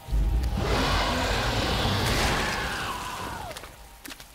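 Cartoon sound effect: a sudden deep rumble with a hissing, whooshing swell over it that dies away over about three and a half seconds, an ominous sting for the fog monster looming.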